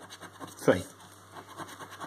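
A coin scraping the scratch-off coating from a paper lottery scratchcard, in a run of short, quick strokes.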